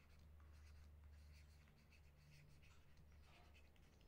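Faint scratching strokes of a stylus writing by hand, over a low steady hum.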